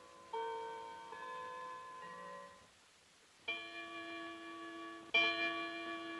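Tall case clock chiming: a few ringing bell notes, a short pause, then two louder strokes about a second and a half apart, each left to ring on.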